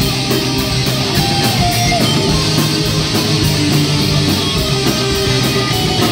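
Metal crossover band playing live: distorted electric guitar and bass riffing over drums, with a steady, evenly repeating cymbal beat and no vocals.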